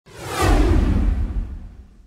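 Whoosh sound effect over a deep rumble. It swells over the first half second, then sweeps down in pitch and fades out over the next second and a half.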